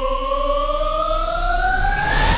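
Soundtrack riser: a pitched synthetic tone with several overtones, gliding steadily upward in pitch as a build-up in the music.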